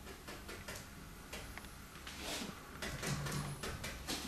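Faint, irregular taps and soft scratches of a paintbrush dabbing paint onto a stretched canvas.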